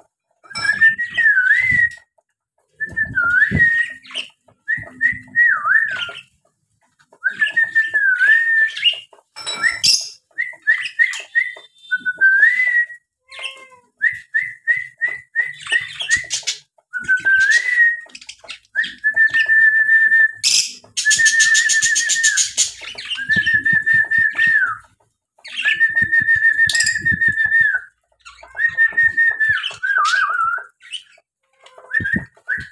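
Caged small pet parrots calling: a run of whistled notes about a second long each, some wavering and some held steady, with a harsh, buzzy chatter about two thirds of the way through.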